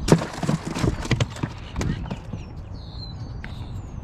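Handling noise in a small metal boat: a sharp knock, then a run of irregular knocks and clatter over about two seconds, settling quieter. Faint high bird chirps come later.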